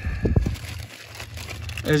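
Rustling and scraping, loudest in a short burst in the first half second, over a steady low rumble; a man's voice begins a word near the end.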